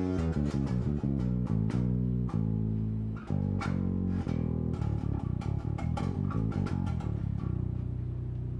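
Electric bass guitar playing a quick run of single plucked notes through a B minor scale pattern, with a held low note near the end.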